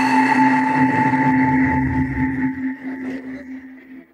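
A ringing, bell-like tone with a few steady pitches over a low rumble, fading slowly over about four seconds.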